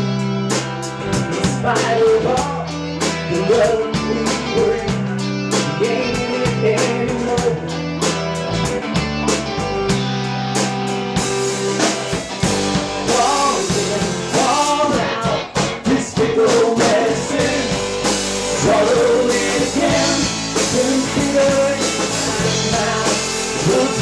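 A live rock band plays with electric guitars, bass and a drum kit. The drums and cymbals fill out about halfway through.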